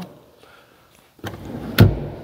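A light click about a second in, then a dull thunk near the end, from a hand working the plastic side trim and height-adjust lever of a cloth driver's seat.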